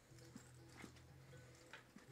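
Near silence: a low steady hum with about three faint clicks, the paw steps of a small dog moving on carpet.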